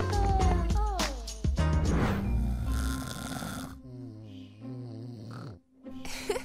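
Playful background music with sliding, cartoonish pitch glides, then a snore: a long noisy breath in followed by a wavering breath out.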